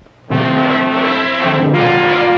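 Brass fanfare of ABC's 1963–66 network ident, coming in abruptly about a third of a second in as loud held chords, with a change of chord near the end.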